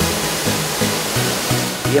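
Rushing waterfall noise, an even hiss, under electronic background music with a steady bass beat.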